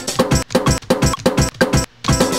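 A drum loop and a guitar loop played live from computer keys in Ableton Live's gate mode, quantized to sixteenth notes. The beat stutters and cuts out briefly several times as keys are released, with a longer gap near the end.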